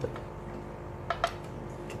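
Metal feeding tongs clicking against aquarium glass: a small tick at the start, then two sharp clicks close together about a second in, over a steady low hum.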